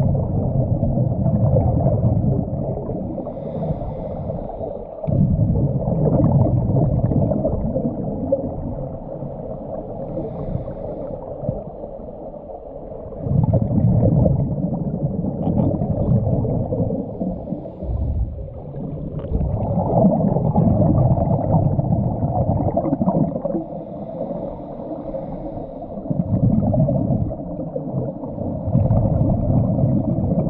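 Scuba diver breathing through a regulator, recorded underwater: muffled rushes of exhaled bubbles come in surges every several seconds, with quieter inhale stretches between.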